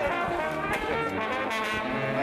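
Music played on brass instruments, trumpets and trombones, sustaining steady notes at an even level.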